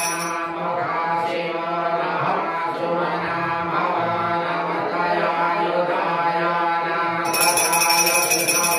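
A Hindu priest chanting puja mantras into a hand microphone in a steady, sung voice. A metallic jingling starts up again near the end.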